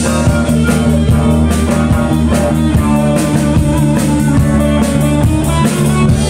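Live rock band playing an instrumental: electric guitar, bass guitar and a Pearl drum kit keeping a steady beat, loud throughout.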